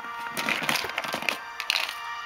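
Clear plastic compartment boxes clattering and rattling as one is slid out of a stacked organizer rack and handled, in irregular bursts through the first second or so and again near the end, over steady background music.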